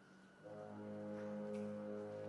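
Andalusian processional march: after a near-quiet pause, low brass come in softly about half a second in with a held, sustained chord.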